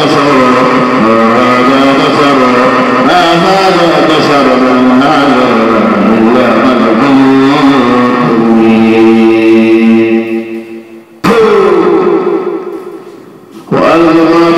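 A single voice chanting in a slow melodic style, with long held notes. About ten seconds in it fades away, snaps back abruptly, fades again and snaps back right at the end.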